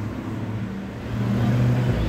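A car's engine pulling away. Its low note gets louder and rises a little about a second in.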